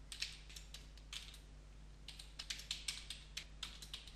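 Computer keyboard typing: faint keystroke clicks, a few scattered at first, then a quicker run of keystrokes in the second half.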